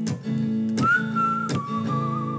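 Hollow-body electric guitar strummed in steady chords, about one stroke every 0.7 seconds. About a second in, a whistled melody comes in, slides down a little and holds a long note.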